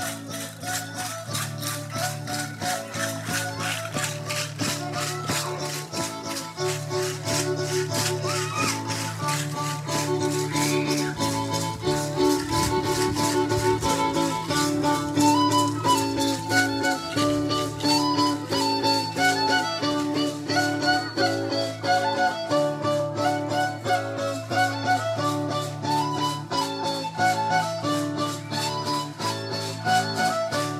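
Live traditional danza music: a melody played over a steady low drone, with a fast, even rattling beat from shaken hand rattles kept up all through.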